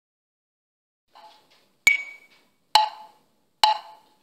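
Metronome count-in at 68 beats per minute: three sharp, woodblock-like clicks evenly spaced just under a second apart, with a fainter tick before them.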